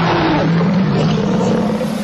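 A sustained rumbling whoosh sound effect under an animated segment bumper, with a low hum in it that rises slightly in pitch toward the end.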